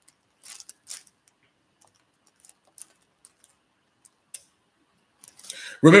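Faint small handling noises: a dozen or so short, scattered clicks and ticks spread irregularly over a few seconds, with no steady sound under them.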